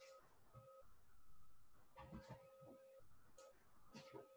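Near silence: faint room tone with a faint tone that switches on and off a few times.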